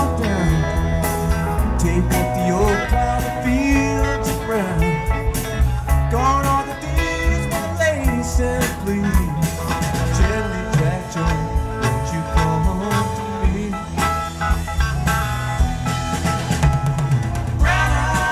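Live rock band playing an instrumental passage: electric guitar lead with sliding, bending notes over bass guitar and drums.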